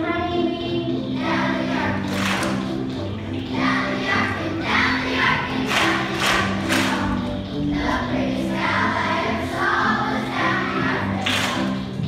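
A children's choir singing to a steady bass accompaniment, with a few sharp noisy accents between phrases.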